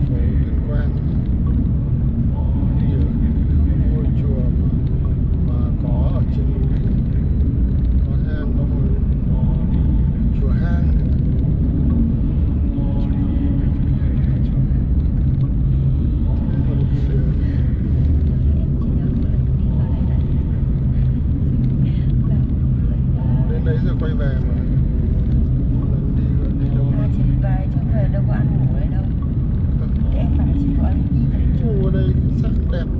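Steady low road and engine rumble inside a moving Mercedes-Benz car's cabin at cruising speed, with faint voices talking now and then.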